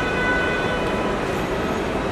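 Steady rumble and hiss of airport terminal ambience, with faint high steady tones held throughout.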